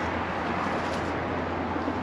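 A steady rushing noise with a low hum underneath, even throughout and with no distinct events.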